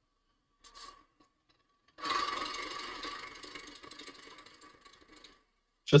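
A small engine running with a rattle, sounding like a lawnmower. It starts suddenly about two seconds in and fades away over the next three seconds.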